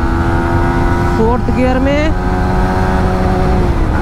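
Yamaha MT-15 V3's 155 cc single-cylinder engine running at high revs under hard acceleration, heard over heavy wind rush. Its steady tone dips briefly near the end as the bike shifts up from fourth to fifth gear.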